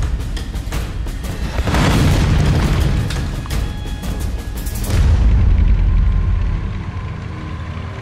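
Cinematic war-film sound mix: a run of sharp cracks and heavy booms over dramatic music, with a deep boom about five seconds in, after which it settles into a steadier music bed.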